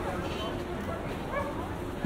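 A small dog yipping twice, about half a second in and again near one and a half seconds, over the chatter of a passing crowd.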